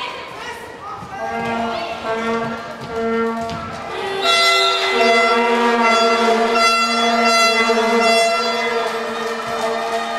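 Music with brass instruments playing a series of long held notes, growing louder about four seconds in.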